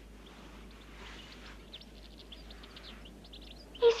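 Birds chirping faintly, many short high chirps, over a steady background hiss.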